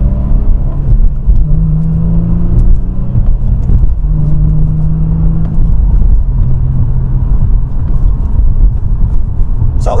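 Infiniti G37's V6 heard from inside the cabin, accelerating through the gears of its six-speed manual. The engine note holds in stretches and breaks off briefly at each upshift, going from second up to sixth.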